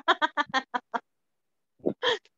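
A person laughing over a video call: a quick, even run of short pulses of about six a second that stops about a second in, dropping to silence before another short sound near the end.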